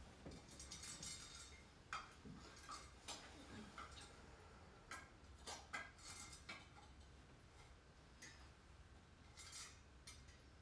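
Near silence with a low room hum, broken by faint, scattered small clicks and rustles: about ten irregular taps and brushes, the kind made by someone handling small objects while sitting still.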